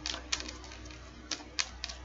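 A deck of tarot cards being shuffled by hand: a run of irregular light clicks and snaps as the cards strike one another.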